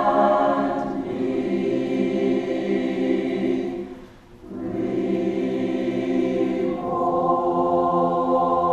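Mixed-voice community choir singing long held chords in parts. The sound breaks off briefly for a breath about halfway through, then the choir comes back in and moves to a new, higher chord near the end.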